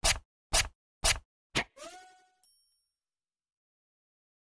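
Cartoon sound effects: four sharp whacks about half a second apart, then two ringing tones that fade out.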